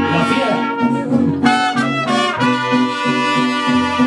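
Mariachi trumpets playing a melody of held notes over a steady rhythm underneath, the instrumental opening of a song just before the singing comes in.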